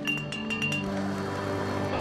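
Glass Coca-Cola bottles clinking, a quick run of clinks in the first second, over background music.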